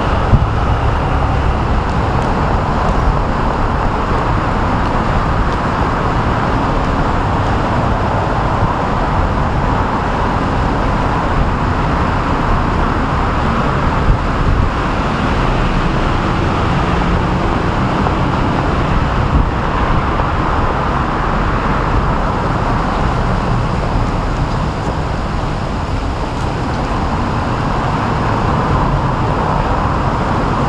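Steady city road-traffic noise: a continuous wash of passing vehicles with no single one standing out.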